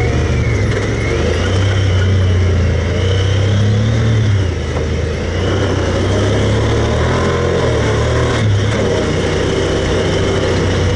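Side-by-side UTV's engine running under throttle as the machine drives a dirt trail. Its note dips briefly about halfway through, then pulls steadily again.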